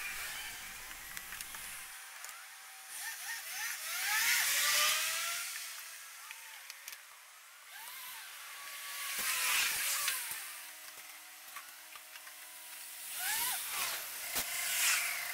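Squeegee blade squeaking on window glass in short gliding chirps as the pane is worked, while passing traffic swells and fades three times.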